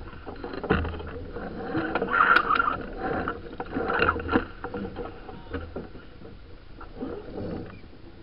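Racing sailboat underway: an uneven wash of water and wind, with scattered short knocks and rattles from deck gear and lines and a couple of louder swells of noise.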